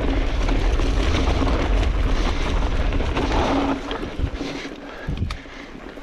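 Mountain bike descending a dirt trail, with wind rushing over the action camera's microphone, tyres rolling on dirt and dry leaves, and the bike rattling. The rush drops off about two-thirds through, and a couple of short knocks follow near the end.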